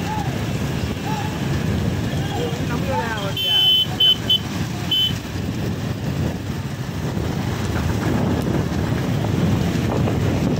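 Motorcycle and scooter engines running together at road speed, with people shouting and whooping over them. About three and a half seconds in comes a burst of shrill high toots: one longer, then three short.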